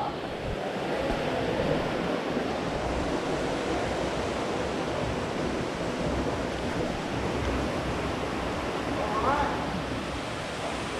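Steady rush of flowing water from the cave's spring stream, an even hiss throughout, with a brief voice about nine seconds in.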